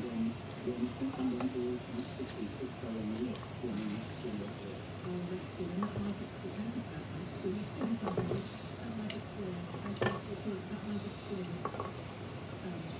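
A low voice runs throughout without clear words. Over it come a few knocks and clinks, loudest at about 8 and 10 seconds in, as chunks of potato and carrot are dropped into a steel cooking pot.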